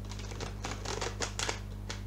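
A deck of oracle cards being shuffled by hand: a quick run of crisp flicking clicks and rustles that stops just before the end.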